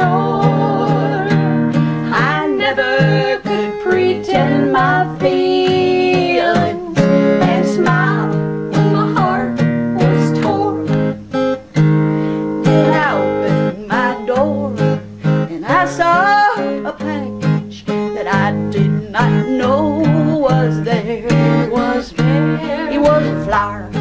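Live folk song: an acoustic guitar strummed in a steady rhythm while women's voices sing in harmony.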